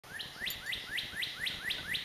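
A songbird singing a steady series of short rising whistled notes, about four a second.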